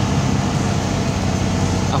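BMW E30's M20B20 2.0-litre inline-six engine running at a steady pitch while the car cruises, heard from inside the cabin along with road noise.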